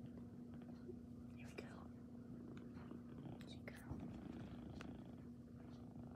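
Domestic cat purring steadily, close by and low in level, with a few soft rustles of a hand stroking its fur.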